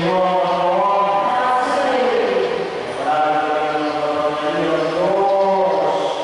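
Sung liturgical chant: voice or voices chanting in long held notes, the pitch shifting every second or so.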